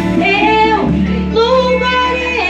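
A woman singing into a microphone over a live band accompaniment, with two held, wavering sung notes above a steady low bass.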